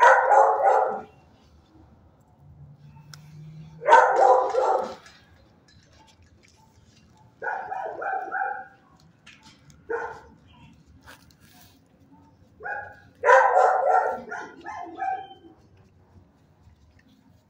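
Dogs barking in short bouts in a shelter kennel: a burst at the start, another about four seconds in, a few barks around eight seconds, a single bark near ten seconds, and a longer run of barks near the end.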